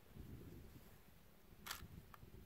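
A DSLR shutter firing once, a short sharp click about one and a half seconds in, over faint low rumble; otherwise near silence.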